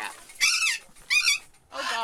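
A dog giving two short, high-pitched yelps.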